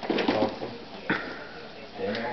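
A baby making short cooing vocal sounds: a low voiced coo in the first half-second, then a brief higher sound about a second in.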